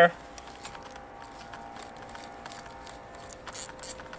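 Faint ticks and rustle of hands twisting a plastic wire nut onto a pair of house wires, with a cluster of ticks near the end, over a faint steady hum.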